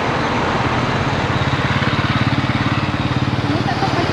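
A road vehicle's engine running close by, a low rapid pulsing note that builds about half a second in and eases off near the end, over general street traffic noise.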